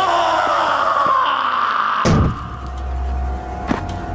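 A long high-pitched cry that shoots up in pitch and then slowly sinks for about two seconds, cut off by a heavy thud about halfway through. After the thud, background music with low bass notes plays.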